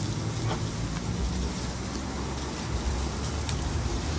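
Steady low hum with an even hiss behind it, the background noise of a street food stall, with a few faint clicks.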